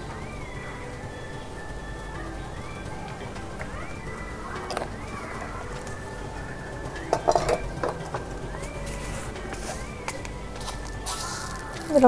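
Quiet background music with a light repeating melody that rises and falls, and a brief louder burst of sound about seven seconds in.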